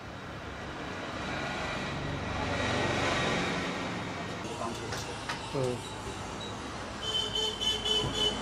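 A road vehicle passing: a broad noise that swells to a peak about three seconds in and then fades, with people's voices in the background.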